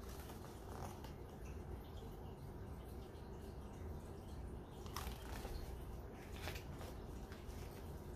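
Faint handling of a picture book's paper pages, with a few soft rustles about a second in and again around five and six and a half seconds, over a low steady room hum.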